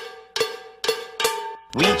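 A short musical lead-in of four struck, ringing notes on one pitch, evenly spaced at about two a second, each dying away. A singing voice comes in near the end.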